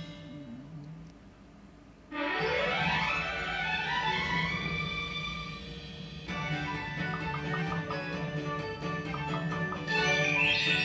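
Fruit machine's bonus music and effects: a low hum, then about two seconds in a sudden rising sweep of chiming tones, and from about six seconds a jingly tune of repeated short notes as the free spins play.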